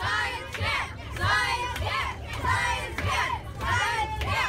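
A group of children shouting together in a repeated rhythmic chant, one loud burst about every half second to second. A low rumble from the moving coach bus runs underneath.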